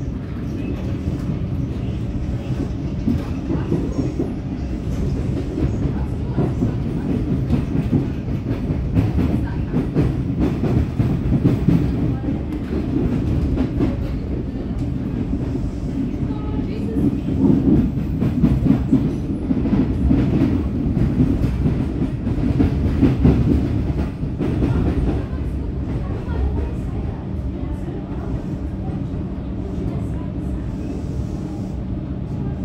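Inside an EDI Comeng electric train running at speed, with a steady rumble of wheels on rail, a constant hum from the traction motors, and repeated clicks and clacks as the wheels cross joints and points. The noise swells for a few seconds about halfway through, then settles back.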